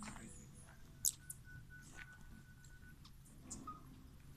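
Hummingbirds giving a few short, very high, thin chips, the loudest about a second in.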